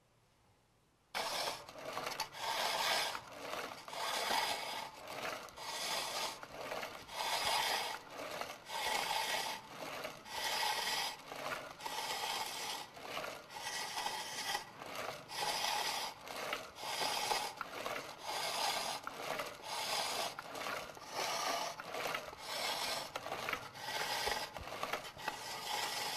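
A knife scraping the rough, dried lacquer surface of a lacquerware object to smooth it. The scraping comes in steady repeated strokes, roughly one every three quarters of a second, and starts abruptly about a second in.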